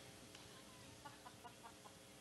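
Near silence with a faint steady hum, and a quick run of faint short chirps, about five a second, starting about a second in.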